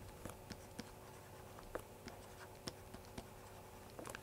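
Faint, irregular clicks and light scratching of a stylus on a tablet screen as words are handwritten.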